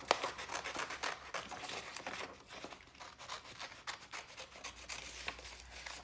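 Small scissors cutting through a sheet of painted paper: a run of quick, irregular snips with the scrape and rustle of the paper.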